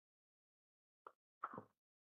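Near silence, broken by a faint single click about a second in and a short, soft mouth sound just before the speaker starts talking.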